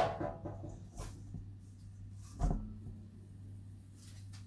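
Knocks from things being handled while preparing food. The loudest is a sharp knock at the very start, then a soft tap about a second in and a duller thud about two and a half seconds in, over a steady low hum.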